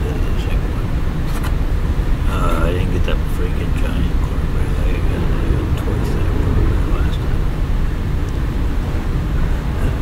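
A steady low rumble with a few light clicks and creaks from a foam takeout clamshell being handled, and a short voiced sound about two and a half seconds in.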